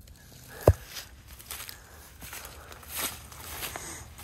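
Footsteps and rustling through dry grass on stony ground, with a single dull thump about three quarters of a second in.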